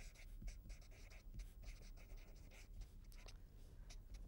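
Faint scratching of a felt-tip marker writing words on paper, a run of short, irregular strokes.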